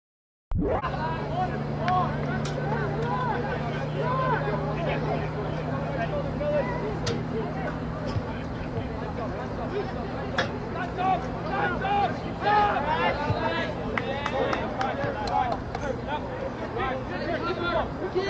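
Players and spectators calling and shouting across an outdoor soccer field during play, indistinct and at a distance, over a steady low hum. The sound cuts in about half a second in.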